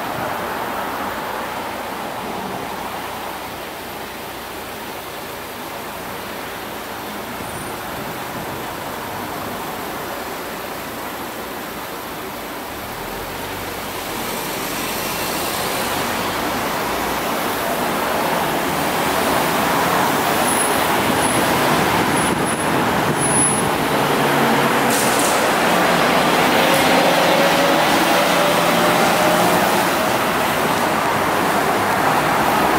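Street traffic with a New Flyer E40LFR electric trolleybus going by. The tyre and traffic noise grows louder about halfway through, and for the last third a rising electric whine comes in as the trolleybus pulls away.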